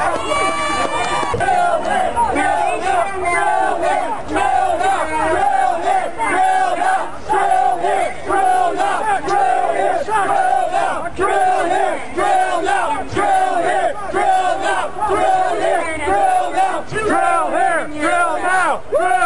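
A crowd of protesters shouting a chant together, loud and continuous, the raised voices repeating in a steady rhythm.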